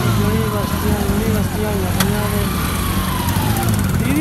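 A vehicle engine idling steadily, with people talking in the background and a single sharp click about halfway through.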